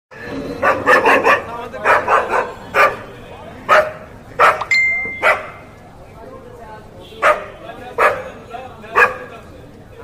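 Dogs barking, in quick runs of three or four barks over the first two and a half seconds, then single barks roughly every second.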